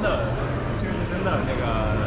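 Background chatter of visitors' voices echoing in a large hall, over a steady low hum, with a brief high-pitched squeak a little under a second in.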